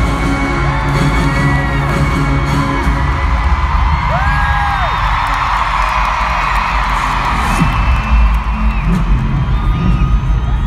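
Large arena crowd screaming and cheering over a loud, bass-heavy pop concert intro track, the screaming swelling through the middle. A single nearby fan's long scream rises and falls about four seconds in.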